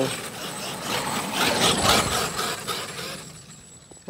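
Traxxas X-Maxx electric RC monster truck running hard through snow on Monster Claws tires: motor and drivetrain noise mixed with the gritty churn of the tires throwing snow. It is loudest about two seconds in, then fades as the truck moves away.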